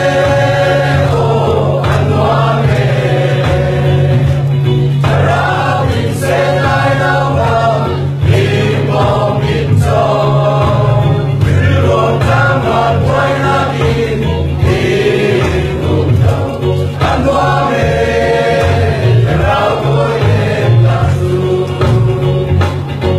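A mixed choir of young men and women singing a Chin-language Christian praise song together, over a steady low accompaniment.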